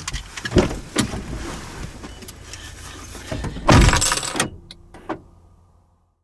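A bag being gathered up and handled in a car's front seat: rustling and a few knocks, then a loud burst of noise about four seconds in as the driver gets out, a single click, and the sound fades away.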